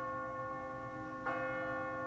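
A bell ringing, a long held tone with several steady overtones, struck again a little past halfway.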